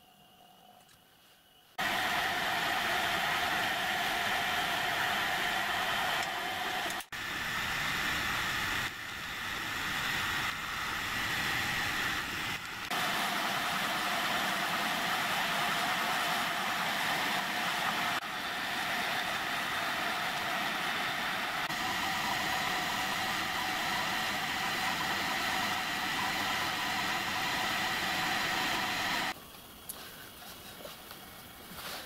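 Pillar drill starting about two seconds in and running steadily with a whine while drilling a pin hole through a miniature locomotive's axle and return crank for a roll pin. The sound stops just before the end.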